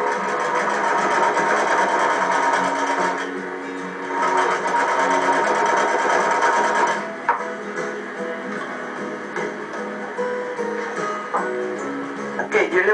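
Sewing machine stitching fabric in two runs of about three seconds each, with a short pause between. Background music with a plucked guitar plays under it, heard through a television speaker.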